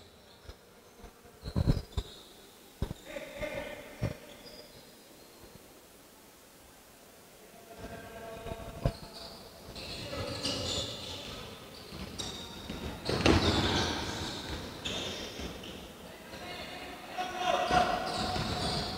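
A basketball bouncing on a hardwood gym floor, a few separate bounces in the first seconds. From about eight seconds in, as play gets going, shoes squeak and players call out on court.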